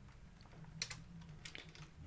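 A few faint computer keyboard keystrokes, the clearest a quick pair of clicks a little before the middle, over a low steady hum.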